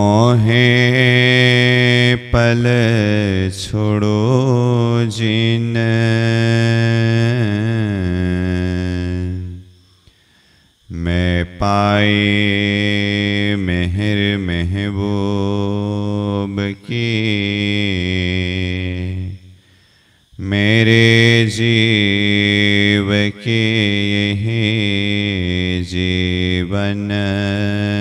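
A man's voice chanting a devotional verse in long, drawn-out sung phrases. There are three phrases, with short pauses for breath about ten and twenty seconds in.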